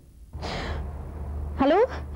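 A woman's breathy sigh into a telephone handset, fading over about a second, followed by her saying 'hello'.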